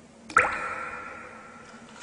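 A single sharp plink with a clear ringing tone that dies away over about a second.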